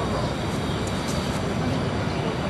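Steady outdoor background rumble, heaviest in the low end, with no clear events and no speech.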